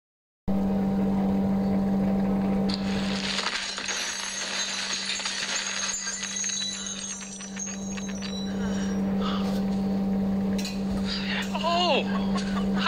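Film soundtrack: debris clinking and tinkling like settling glass and metal fragments from about three seconds in, over soft music and a steady low hum. A man's voice comes in near the end.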